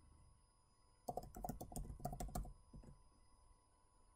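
Computer keyboard typing, faint: a quick run of keystrokes starts about a second in and lasts about a second and a half, followed by a few scattered taps.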